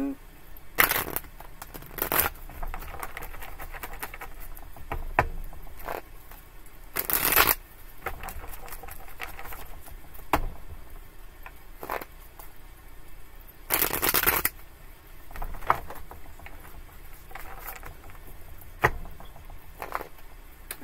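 A well-worn tarot deck being shuffled by hand: soft, continuous card rustling broken by several louder half-second bursts of shuffling, about one, two, seven and fourteen seconds in.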